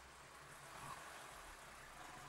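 Near silence: the faint, steady low rumble of a car engine idling.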